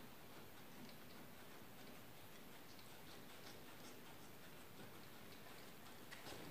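Very faint, scattered ticking and scraping of a mixing stick working two-part epoxy fairing compound on a mixing board.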